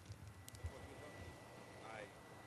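Faint open-microphone background on an outdoor feed: an uneven low rumble under a steady thin high tone, with two sharp clicks in the first half second and a brief faint voice near the end.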